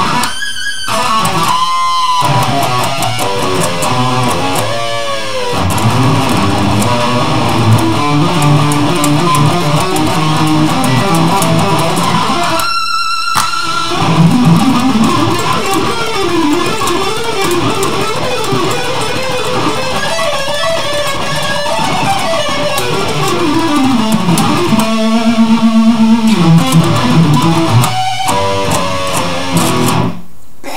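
Electric guitar in standard tuning playing fast, chaotic metal riffs, with several short stops between phrases. In the middle, runs of notes step up and down.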